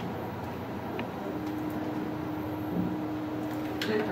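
A steady low electrical hum starts about a second in as the hobby robot is connected to power. It continues evenly, with a few light clicks from the cable and handling.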